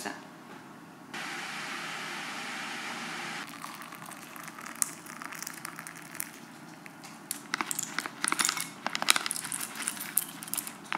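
A steady rushing hiss for about two seconds that starts and stops abruptly, then hot water poured from a kettle into a teacup. In the last few seconds, pumpkin seeds are tipped from a crinkly packet onto a ceramic plate, with many small clicks and rattles.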